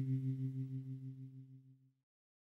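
The last low chord of a reggae song rings out on electric guitar with a chorus effect, wavering slightly as it fades away to silence just before the end.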